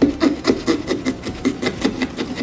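Small hand carving tool sawing back and forth through pumpkin rind to cut out a stencilled eye, a quick, steady rasping of about five strokes a second.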